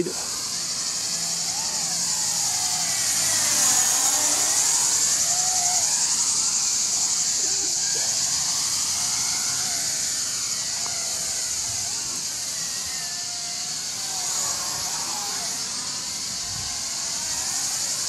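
WLToys V333 Cyclone II quadcopter flying at full speed: a steady, high electric-motor and propeller buzz whose pitch sweeps up and down as it flies around.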